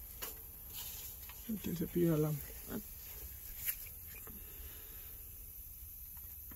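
A man's voice saying a short word about a second and a half in, over a low steady background hum, with a few faint clicks.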